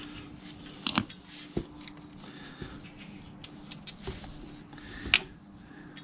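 Magnetic engine-oil drain plug on a KTM 690 Enduro R being unscrewed by hand, with a few sharp metal clicks as it comes free, the loudest about five seconds in. Warm oil begins to run from the drain hole into a plastic drain basin.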